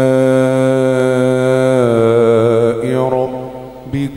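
Man reciting the Quran in melodic tilawat style, holding one long drawn-out vowel that dips slightly in pitch about two seconds in and fades away near the end.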